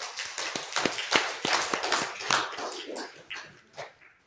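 Congregation applauding: a dense patter of hand claps that thins out and stops just before the end.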